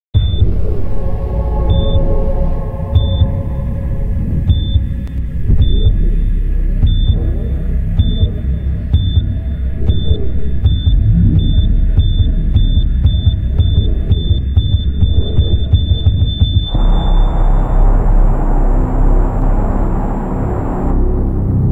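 Electronic intro music for a TV programme: a deep rumbling bass bed under a high beep, like a heart monitor, that repeats faster and faster until it becomes one held tone. About 17 seconds in it breaks into a wider swelling sound.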